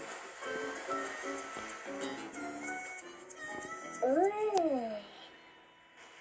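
Cartoon soundtrack playing through a TV's speaker: a light melody of short notes, then about four seconds in a loud voice-like call that rises and falls in pitch, the loudest moment, before the music goes quiet.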